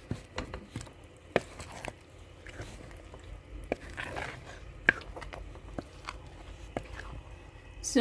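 Pot of thick ogbono soup simmering, with irregular pops and clicks from bursting bubbles, about a dozen across the stretch.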